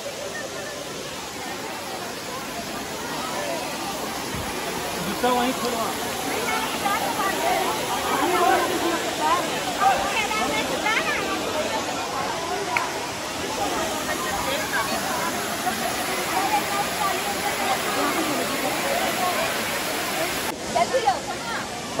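Steady rush of a waterfall's falling water, growing a little louder about four seconds in, with people's voices talking over it.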